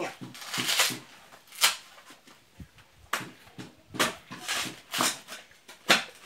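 Fibrous husk of a green coconut being torn away by hand: several short rasping rips with pauses between them, the first strip of husk, which is hard to pull off.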